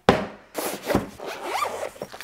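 A sharp knock at the very start, then the rasping zipper of a soft black fabric tool case being pulled along.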